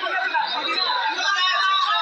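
Several voices talking over one another: a room full of chatter.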